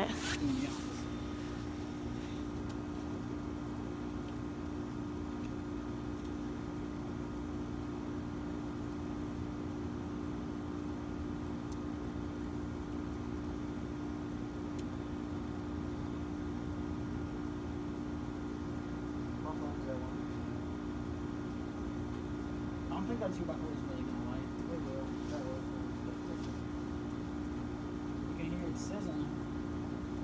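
A steady mechanical hum with several fixed tones, like a motor running without change. Faint voices come in now and then in the second half.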